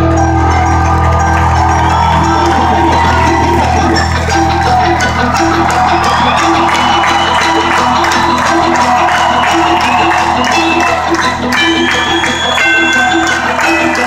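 Loud live amplified music from a concert stage, heard from the seats of a large arena, with a steady beat.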